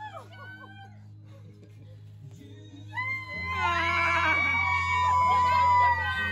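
Excited high-pitched screaming from a few people, starting about halfway through and held for nearly three seconds, over background music with steady bass notes. Brief voices are heard near the start.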